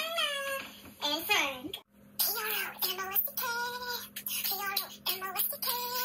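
A woman's voice singing a short song with held notes. It breaks off about two seconds in, and another woman's voice carries on singing over a faint steady hum.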